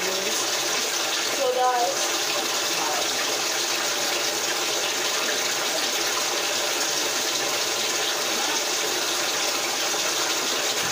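Shower water running steadily, an even hiss.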